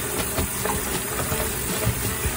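Kitchen faucet running a steady stream into a plastic basin of soapy water, with hands squeezing and scrubbing a sudsy dishcloth and sponge in the suds.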